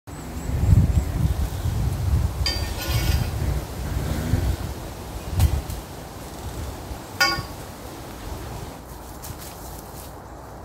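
Wind buffeting the microphone as a low rumble for the first half, with a sharp knock and two short ringing clinks, one about two and a half seconds in and one about seven seconds in.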